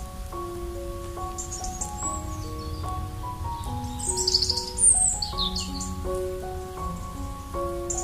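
Soft piano music in slow single notes with birds singing over it: scattered high chirps, then a brief trill and a few quick falling whistles about four to five seconds in, the loudest moments of the clip.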